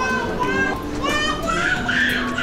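A child's high-pitched voice calling out in short bursts, over the general hubbub of people in a busy indoor concourse.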